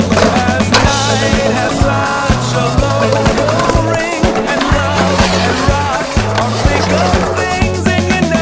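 Background music with a steady, looping bass line, mixed with skateboard sounds: urethane wheels rolling on concrete and board impacts, with a sharp clack about a second in.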